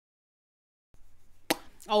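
Silence for about a second, then faint quick taps of a stippling brush patting gel bronzer onto the cheek. A sharp click follows, then a short spoken "oh".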